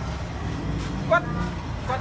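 A man speaking a few short words over a steady low rumble of vehicle and street noise.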